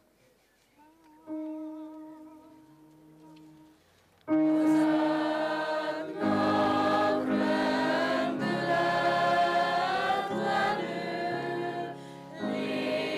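Choral music: a few quiet held notes, then a choir comes in loudly about four seconds in and sings on.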